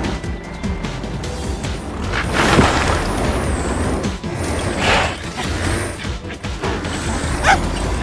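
Cartoon soundtrack: background music under heavy-machinery and crash sound effects, with two noisy rushing swells about two and a half and five seconds in.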